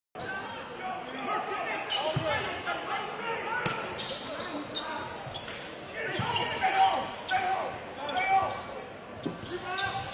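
Basketball bouncing on a hardwood gym floor, sharp thuds scattered among voices and shouts from players and spectators, echoing in a large gym.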